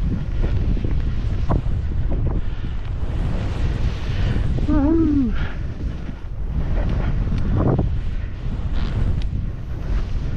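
Wind buffeting the camera's microphone in a steady low rush as the skier descends through powder, with a short rising-and-falling vocal cry about halfway through.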